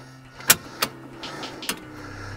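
Sharp metallic clicks from a Thule T2 Pro XTR hitch bike rack as it is handled and tilted upright: three clicks, the loudest about half a second in.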